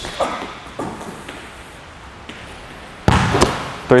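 A basketball hitting hard with one loud slam about three seconds in, ringing briefly as it dies away, after a quiet stretch.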